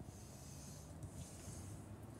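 Faint, steady room tone: a low hum and a soft hiss, with no distinct sound event.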